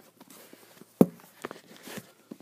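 Handling noise from fingers gripping and moving the recording phone: faint rubbing with one sharp knock about a second in and a few smaller clicks after it.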